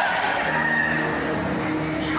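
A woman's voice over a microphone, drawing out one long held note.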